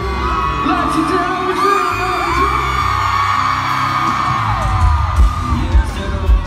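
Live band playing an instrumental break at a loud arena concert, heard from within the crowd, with high gliding notes arching over a steady bass and fans whooping and yelling.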